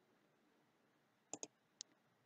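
Near silence, broken by two quick computer mouse clicks close together about one and a half seconds in and a fainter click just after.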